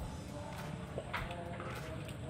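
A man sipping and swallowing tea from a glass mug, with a couple of short soft sounds about a second in, over steady low background noise.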